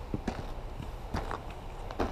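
Hiker's footsteps on a gravel and stone trailhead path: irregular sharp crunching steps, some in quick pairs, over a low steady rumble.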